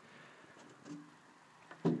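Quiet room with a faint, short vocal sound about halfway through; a man's voice starts speaking near the end.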